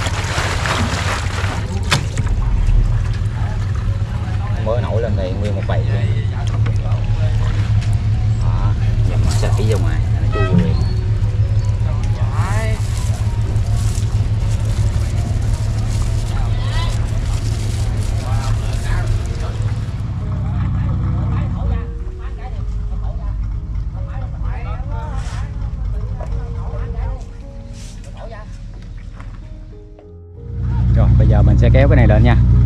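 Water splashing as a 20-litre plastic water jug is dunked and shaken in shallow harbour water. A steady low engine drone from a boat runs underneath and drops off in the last few seconds.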